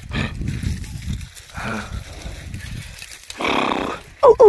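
Water buffalo calling: a short, faint call about halfway through, then a loud, full bellow near the end lasting about half a second.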